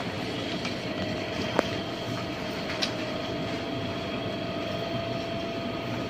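Steady outdoor background rumble with a faint continuous hum, broken by a single sharp click about a second and a half in and a brief high chirp a little later.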